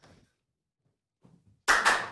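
Near silence, then near the end a couple of sharp hand claps, one quickly after the other.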